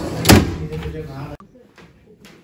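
A wooden cabinet drawer shut with one loud knock about a third of a second in. The sound cuts off abruptly about two-thirds of the way through, leaving faint room tone.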